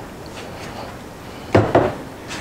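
Quiet kitchen room tone, then two quick knocks close together about a second and a half in.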